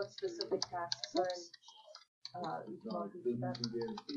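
A person talking quietly in words too unclear to make out, over the clicks of typing on a computer keyboard, with a short pause about halfway.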